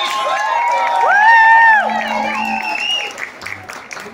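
Concert audience clapping, with several voices calling out over the applause; the loudest moment is one long held voice a little after a second in, and the clapping thins toward the end.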